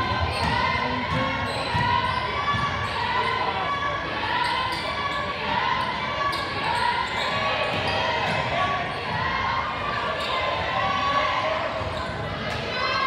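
A basketball dribbled on a hardwood gym floor during live play, with players' and spectators' voices around it, echoing in the large gym.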